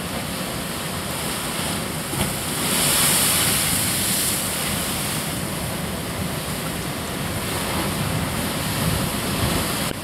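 Steady rush of sea surf on a rocky shoreline, swelling louder for a couple of seconds about three seconds in.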